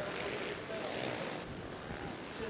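Motorcycle engine running at speed under heavy, steady wind rush on a helmet-mounted camera's microphone.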